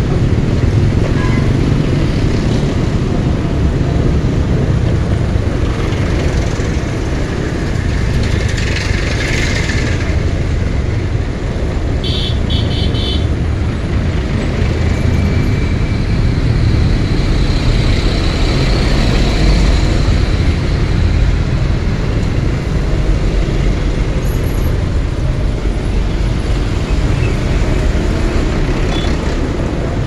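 Steady rumble of a scooter ride in dense heavy traffic: the scooter's engine and road noise mixed with trucks and motorbikes running close by. A brief hiss comes about nine seconds in, and a quick run of short high beeps follows around twelve seconds.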